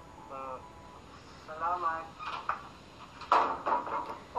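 Short spoken lines of dialogue from a TV drama playing back, followed near the end by a brief noisy burst as a door is shut.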